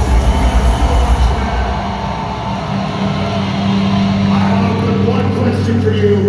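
Live metal band played loud through a concert PA and picked up on a phone in the crowd. Heavy pulsing low bass gives way about two seconds in to a sustained low droning chord.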